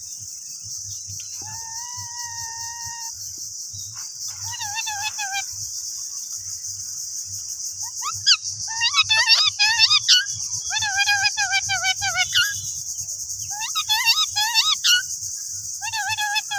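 Indian ringneck parakeet vocalising: one steady whistle, then several bursts of warbling, wavering chatter with quick rising squeaks, loudest in the middle. A steady high cricket trill runs underneath.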